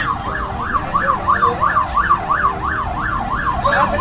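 Fast yelp siren, its pitch sweeping up and down about three times a second without a break.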